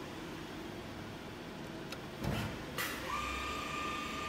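Feeler VMP-40A CNC vertical machining center starting its program: a low thump about two seconds in, a short burst of hiss, then a steady high whine from about three seconds in as the machine gets running.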